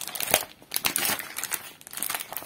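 Clear plastic packaging of a cross-stitch kit crinkling as it is handled and turned over: a run of quick crackles, loudest about a third of a second in.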